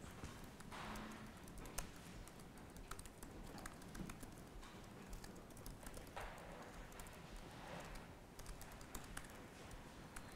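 Faint typing on a computer keyboard: irregular, scattered keystroke clicks.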